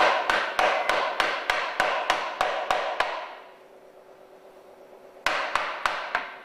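A chocolate mould full of melted tempered chocolate knocked repeatedly against the work bench, about three sharp taps a second, to bring trapped air bubbles out of the chocolate. The tapping stops for about two seconds, then another quick run of taps near the end.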